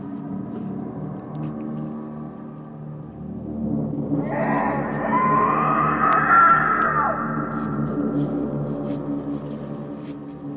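Horror film score: a steady low drone, with higher sustained tones that swell in about four seconds in, rise and waver, then fade back after about seven seconds.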